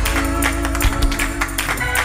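Live church band playing fast praise-break music: steady drum strokes under held keyboard chords and bass.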